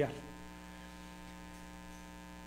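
Steady electrical hum, a stack of fixed tones, through a microphone and sound system, with the tail of a man's word fading at the very start.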